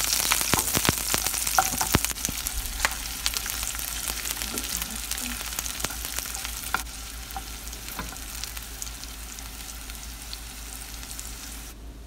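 Chopped onion, garlic and ginger sizzling in hot oil in a nonstick pan while a spatula stirs them, with scattered light taps of the spatula on the pan. The sizzle slowly fades.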